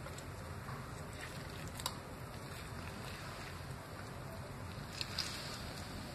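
Low, steady background noise with a faint tap about two seconds in and a couple more about five seconds in.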